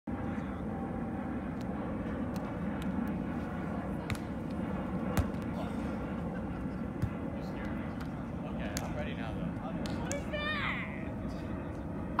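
Volleyball being played on sand: a few sharp slaps of the ball being struck, the loudest two about two seconds apart, over a steady outdoor rumble. Distant voices come in near the end.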